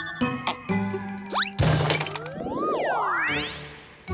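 Cartoon background music with tinkling, chime-like notes and cartoon sound effects: a quick upward whistle about a second in, then a long rising sweep that climbs very high while the music fades near the end.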